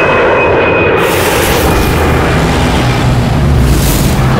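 Jet airliner passing low overhead: a loud, continuous engine roar that grows deeper and heavier from about a second in.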